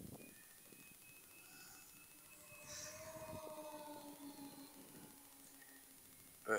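Faint, steady whine of an RC F7F Tigercat model's twin electric motors and propellers in flight at about half throttle. It grows a little louder around the middle.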